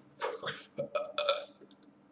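A man's short, unworded mouth and throat sounds: several breathy, grunt-like bursts over the first second and a half, then a few faint clicks.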